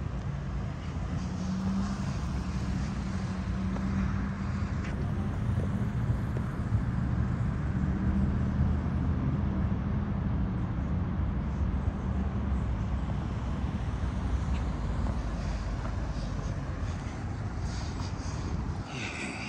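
Road traffic: vehicle engines running nearby with a steady low hum.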